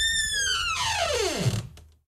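A comic falling-pitch sound effect: a whistle-like tone with overtones holds briefly, then slides steeply down in pitch over about a second and fades out.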